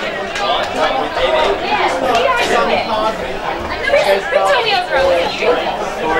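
Chatter of several people talking over one another, with no single voice clear.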